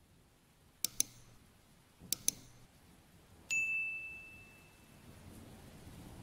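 Sound effects for a like-and-subscribe button animation: two quick double clicks, then a single bright bell ding that rings out and fades over about a second and a half.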